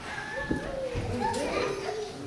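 Several people talking indistinctly at once, children's voices among them, with a light knock about half a second in.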